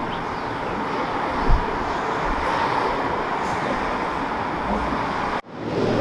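Steady outdoor street ambience with the hum of road traffic, and a single low thump about a second and a half in. It cuts off suddenly near the end.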